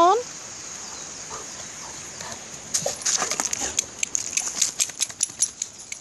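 Steps crunching and clattering on loose pebbles, a quick irregular run of sharp clicks starting about three seconds in, over the steady hiss of a stream.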